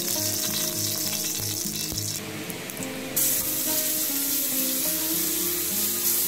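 Olive oil sizzling in a hot aluminium pan, a little louder from about three seconds in. A garlic-and-salt seasoning is frying in the oil and being stirred with a spatula near the end.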